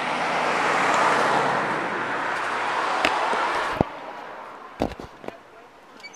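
Road traffic: a car passing on the road, swelling about a second in and slowly fading. From about three seconds in come a few sharp clicks and knocks, after which the road noise drops away abruptly.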